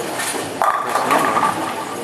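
Bowling alley din, with pins and balls clattering on the lanes.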